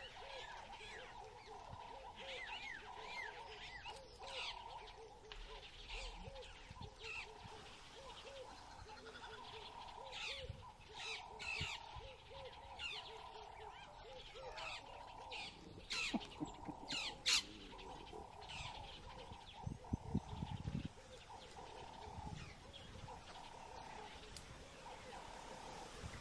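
Wild birds calling and chirping in dry bush, over a lower call that repeats steadily the whole time. A few sharper, louder calls come about two-thirds of the way through, and a brief low rustle follows a little later.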